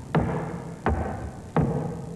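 A man's voice into a microphone imitating an old Model T Ford engine firing as it is cranked: regular popping hits, about three in two seconds, each dropping in pitch.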